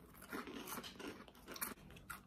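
Faint, irregular crunching as dry berry-flavoured cereal loops are chewed.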